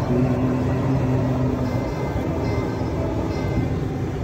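Car interior noise while driving: a steady engine and road rumble with a low, even hum.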